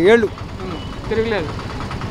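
A man speaking in Telugu, one phrase ending at the start and a quieter one about a second in, over an auto-rickshaw engine idling steadily close by.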